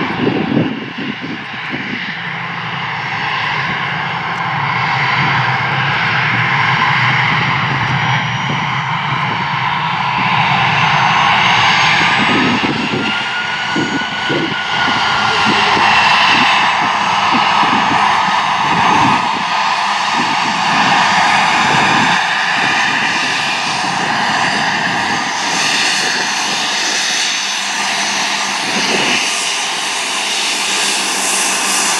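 Gulfstream G550's twin Rolls-Royce BR710 turbofans at taxi power: a steady jet whine over a rushing roar, with one tone rising and falling briefly about midway.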